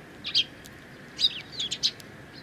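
Eurasian tree sparrows chirping close by: two short chirps near the start, then a quick run of four or five sharp chirps in the second half.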